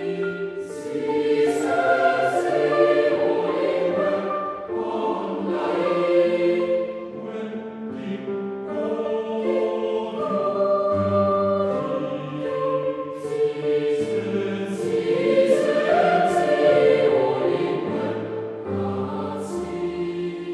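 A boys' choir singing a traditional folk song in several parts, with voices holding notes together and moving from chord to chord.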